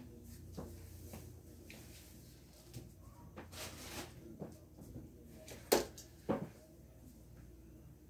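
Quiet small room with scattered faint knocks and rustles from a person moving about and changing a shirt out of view, and two sharper knocks about half a second apart a little after the middle.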